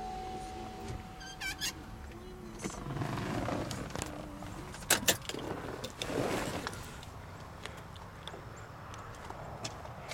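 Power window motors of a Pontiac Solstice whining steadily as the windows go up, stopping about two seconds in. About five seconds in comes a sharp click as the door is opened, followed by rustling movement.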